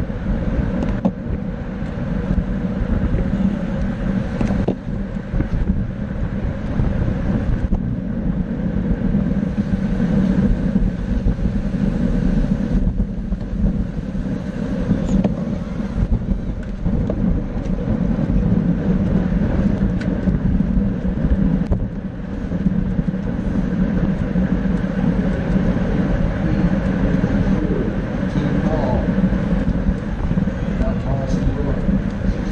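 Steady wind and road noise on a bicycle-mounted action camera's microphone while riding at about 23 mph in a bike-race bunch.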